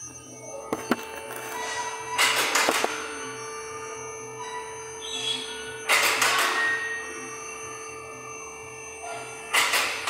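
Tyre-workshop background sound: music and a steady hum, broken three times by short, loud bursts of hissing noise.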